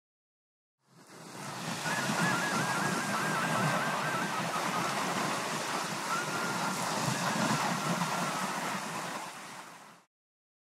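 Sea waves washing on a shore, a steady rushing that fades in about a second in and fades out near the end. Over it, a thin, high warbling whistle in the first few seconds and a steadier high whistle later.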